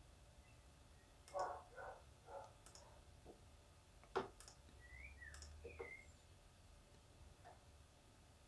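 Near silence with a few faint computer mouse clicks as menus are opened and a date range is picked. A couple of faint short chirps come just after the middle.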